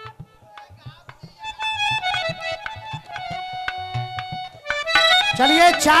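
Live Indian stage accompaniment: tabla strokes, joined after about a second and a half by a sustained reedy harmonium melody. Near the end a man's amplified voice comes in over the music and is the loudest part.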